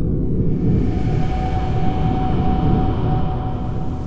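Intro sound design for a logo title card: a deep, steady rumbling drone with a faint held higher tone over it.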